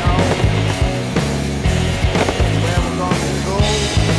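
Rock music soundtrack with a steady beat of drums and bass and bending guitar or vocal lines.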